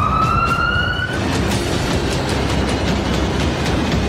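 A siren wailing, its pitch rising for about a second before it stops, over a dense, steady rumbling noise.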